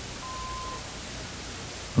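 Steady hiss of an old recording's soundtrack, with one brief faint beep near a quarter second in, lasting about half a second.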